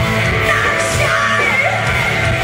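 Live rock band playing loud and steady, with electric guitars, drums and a female lead singer yelling and singing over them, heard from the audience.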